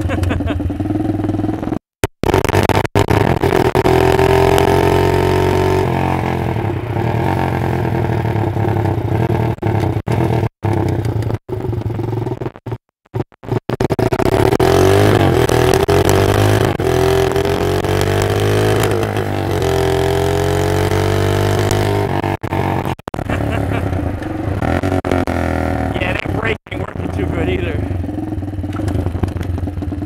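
Lifan 163FML 200cc single-cylinder four-stroke engine on a minibike, revving up and down as it is ridden, its pitch rising and falling again and again, with the sound cutting out briefly a few times. The owner suspects it is running lean under load.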